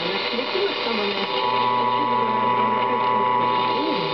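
Longwave AM broadcast of Radio France International on 162 kHz, heard through a Drake SW4A shortwave receiver's speaker as the receiver is tuned: faint programme voices under steady static hiss. About a second in, a steady whistle and hum rise over it and fade near the end. This is transatlantic longwave reception that the listener credits to solar-flare propagation.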